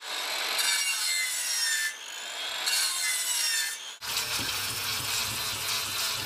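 A circular saw cutting through a stack of plywood scraps, its whine sagging and dipping under load. About four seconds in the sound changes abruptly to a 4-inch angle grinder with a sanding disc grinding across the plywood face, a steadier noise with a low hum.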